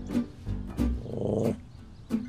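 Light background music, with a dog growling briefly about a second in.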